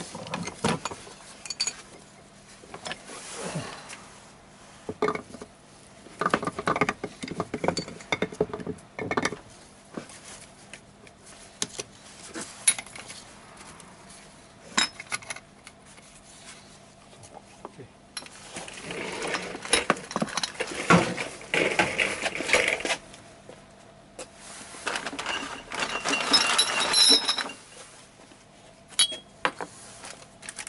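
Metal parts of a Toyota AE86 differential (ring gear, carrier and housing) clinking and clanking as they are handled and put together by hand. Irregular knocks throughout, with two busier, louder spells about two-thirds of the way through and near the end, some hits ringing briefly.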